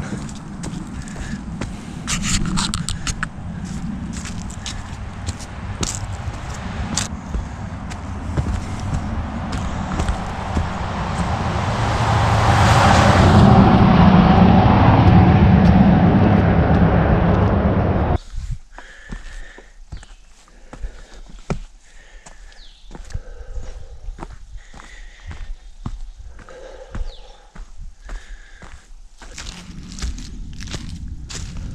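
Footsteps and scuffs on a steep dirt forest trail, picked up by a body-worn camera, under a dense rumbling noise on the microphone. The rumble swells to its loudest about two-thirds of the way through its stretch, then cuts off abruptly, leaving quieter, irregular footsteps.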